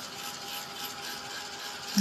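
Small handheld electric dryer running steadily with an even whir and a faint steady tone, blowing air over freshly applied paint to dry it quickly.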